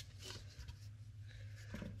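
Faint handling noise of plastic bottles being worked out of a foam packaging insert: soft rubbing and a few light clicks over a low steady hum.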